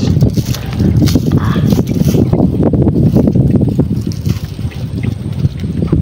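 Wind buffeting the microphone on an open boat: a loud, uneven low rumble throughout, with scattered faint clicks and rustles of handling.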